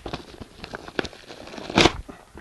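Paper and plastic wrapping crinkling and rustling as it is handled, with a short, louder rustle near the end.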